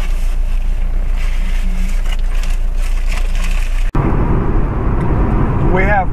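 Steady low hum inside a parked car's cabin, then an abrupt cut about four seconds in to the louder, denser rumble of tyre and road noise from the car driving on a highway, heard from inside the cabin.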